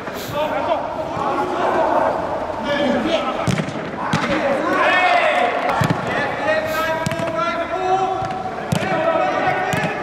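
Footballers shouting and calling to each other, some calls held long, with several sharp thuds of a football being kicked on artificial turf.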